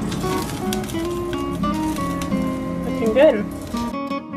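Acoustic guitar background music over low kitchen noise, with a few light clicks early on and a short rising-and-falling voice about three seconds in.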